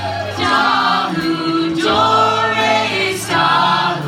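A group of voices singing a song together like a choir, holding long notes that change about once a second, over a steady low accompaniment.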